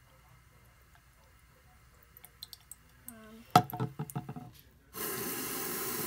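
A few sharp knocks, then about a second before the end a faucet is turned on and tap water runs in a steady stream into the sink.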